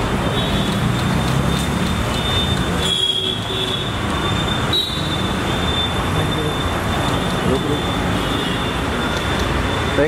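Busy street noise: a steady rumble of road traffic with a thin, high-pitched squeal that comes and goes.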